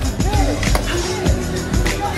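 Badminton rackets striking shuttlecocks about twice a second in a fast multi-shuttle feed drill, with shoes squeaking on the court floor, over background music.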